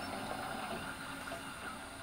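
Steady low hum and hiss of machinery inside a research submersible's cabin during a dive.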